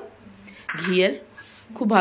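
Steel utensils clinking against stainless-steel plates and a pot, a few sharp clinks about halfway through.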